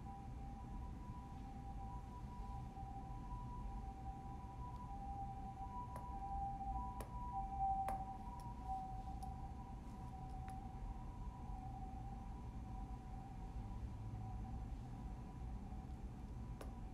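Faint steady two-tone whine over low room rumble, with a few light clicks in the middle.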